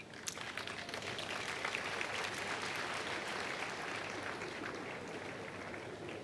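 A congregation applauding. The clapping builds within the first second, holds steady, and eases slightly toward the end.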